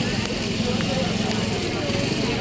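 Indistinct voices of bystanders over a steady low rumble of road traffic.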